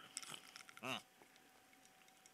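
A person taking a drink, heard faintly: a few small clicks, then a short throaty gulp about a second in.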